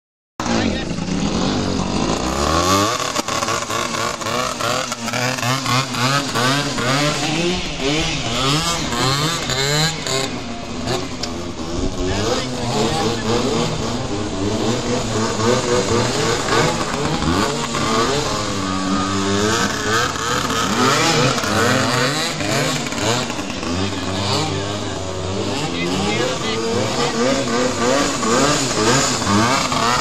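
Suzuki PV minibike's small two-stroke single-cylinder engine revving up and down as it is ridden and skidded around on snow, its pitch rising and falling over and over. The sound starts about half a second in.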